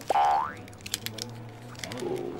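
A comic 'boing' sound effect: one quick rising glide just after the start, lasting under half a second. A few faint clicks follow over a low steady hum.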